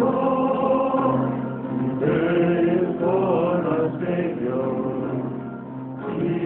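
A choir singing a slow sacred chant or hymn in long held notes, the melody moving every second or so over a steady low note held underneath.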